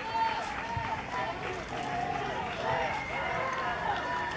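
Several young voices chanting a sing-song team cheer in short rising-and-falling phrases, with one held high note near the end.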